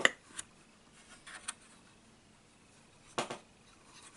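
Faint clicks and rubbing of fingers handling plastic LEGO parts inside a model car's cabin, with a few small ticks and a slightly louder click about three seconds in.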